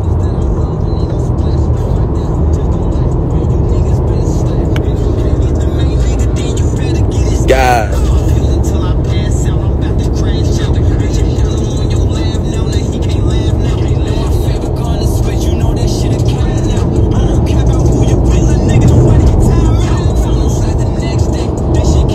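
Music with vocals and a heavy bass line playing loudly inside a car's cabin, over the car's steady rumble.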